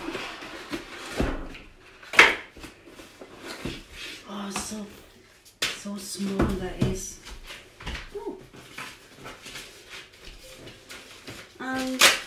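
Cardboard and paper packaging being handled and rustled while a laptop box is unpacked, with scattered knocks and taps, the sharpest about two seconds in. A woman's voice murmurs briefly in the middle.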